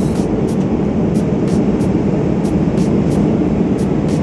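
Steady, loud low rumble of a Boeing 777-300ER's cabin in flight: the drone of airflow and engines.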